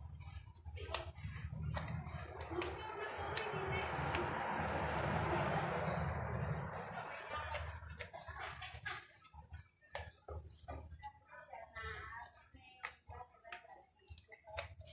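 Hands working a car light unit's plastic housing and rubber gasket: scattered light clicks and taps, with a longer rubbing swell in the middle, over a low steady hum that fades out about two-thirds of the way through.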